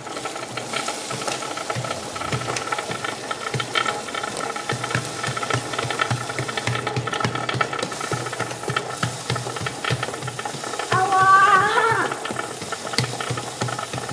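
Aerosol chain lube hissing steadily onto the rear drive chain of a Yamaha Raptor quad while the rear wheel is turned by hand, with the chain and sprocket rattling as they run.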